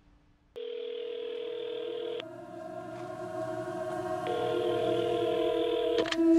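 Telephone ringing tone: a steady electronic tone sounds for about a second and a half, stops for about two seconds, then sounds again, over a sustained low drone.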